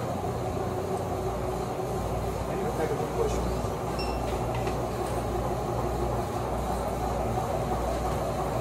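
Store ambience: a steady low hum with indistinct murmuring voices. About halfway through, a single short beep comes from a handheld barcode scanner at the checkout.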